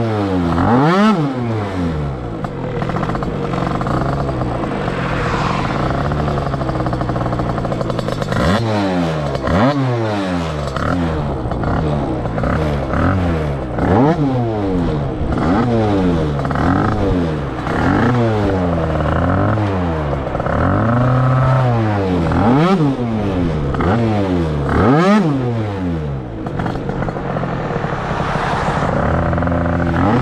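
Tuned 100cc two-stroke Yamaha Jog RR scooter engine running under way. It holds a fairly steady high pitch for several seconds, then revs up and drops back over and over, about once every second and a half.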